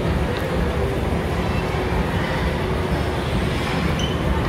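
Steady background noise of a busy shopping mall: an even, low rumble with no music playing.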